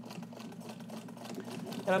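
Vintage Necchi BU Nova sewing machine running at a steady speed: a steady motor hum with the rapid ticking of the needle mechanism. It is sewing a long straight stitch through densely woven fabric.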